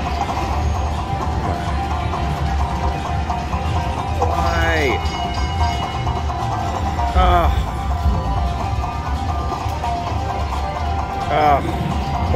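Ultimate Screaming Links slot machine playing its electronic bonus music and effects during the free spins. One rising sweep comes about four seconds in, and descending tone flourishes follow around seven and eleven seconds, over a steady electronic bed and casino hubbub.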